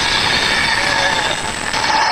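Loud, steady, harsh noise with thin squealing tones running through it: a cartoon-style sound effect on the anime soundtrack.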